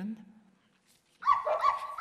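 Dog barking: a quick run of high barks starting a little over a second in, given as the stuffed St. Bernard's protest.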